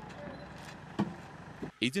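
Outdoor street background noise with a sharp knock about a second in, as wooden boards are handled and set down. A man's narrating voice starts near the end.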